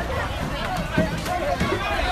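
A crowd of people talking at once, several voices overlapping, with a single sharp knock about halfway through.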